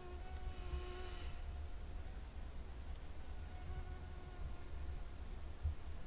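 A flying insect's faint, steady whine, heard twice: for about the first second, then again from about three to five seconds in, over a low background rumble.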